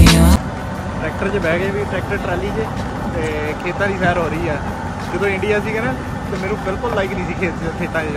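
Steady low rumble of a farm hay wagon ride on a dirt track, under a man talking. Music cuts off abruptly right at the start.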